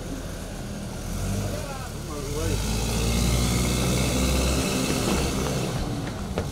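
An SUV's engine running and its tyres rolling as it pulls away, the hiss of the tyres swelling about halfway through and easing off near the end. A brief faint voice about two seconds in.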